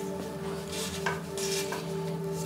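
Handlebar tape being stretched and wound onto a road bike's drop bar by gloved hands, giving a few short scratchy rustles, over soft steady background music.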